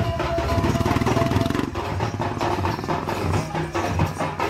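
Procession drumming: barrel drums (dhol) played fast and dense, loud and continuous, as street music for a Danda Nacha procession.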